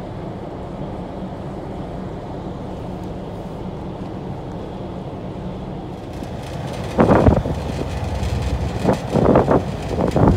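Steady low rumble of a boat's engine under wind on the microphone; from about seven seconds in, louder gusts buffet the microphone.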